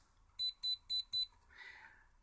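Piezo disc buzzer on an Arduino giving four short, high beeps about a quarter of a second apart, one for each touch of a coin pad on a capacitive touch sensor: each beep confirms a registered touch.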